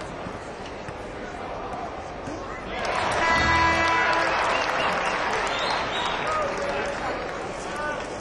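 Basketball arena crowd noise, swelling about three seconds in as an arena horn sounds for about a second and a half.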